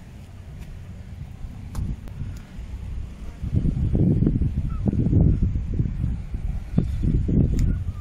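Wind buffeting the microphone: a low rumble that gusts much louder about three and a half seconds in, in uneven surges.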